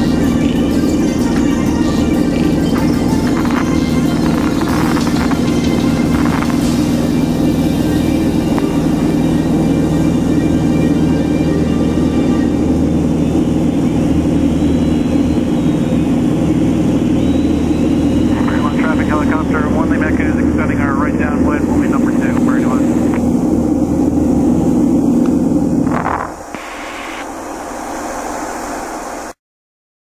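Single-engine piston airplane at full takeoff power, heard from inside the cabin as a loud, steady drone through the takeoff roll and climb. The sound drops sharply about 26 seconds in, then cuts off just before the end.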